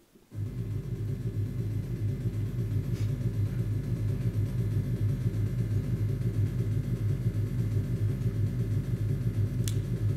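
Steady low rumble from a documentary soundtrack played back through a lecture hall's speakers, starting abruptly as playback begins.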